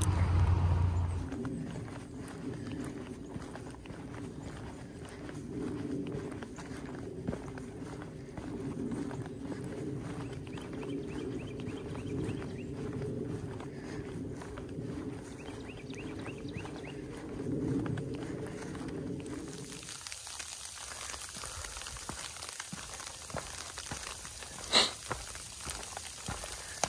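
Footsteps on a leaf-covered forest trail: irregular crunching steps over a steady low hum. About three-quarters of the way through, the sound changes suddenly to a quieter hiss with a couple of sharp clicks.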